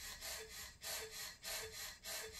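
Rhythmic, breathy in-and-out panting from a pop song's intro, played back from CD, about two breaths a second at low level before the beat comes in.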